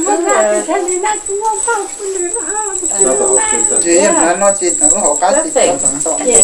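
Several people talking, with a steady high-pitched whine throughout.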